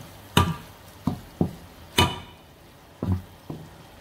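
Kitchen utensil knocking against a metal colander while raw rice stuffing is stirred: about six separate knocks, the loudest about two seconds in, with a short metallic ring.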